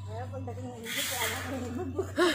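A man's voice talking, with a short hiss about a second in, over a steady low hum.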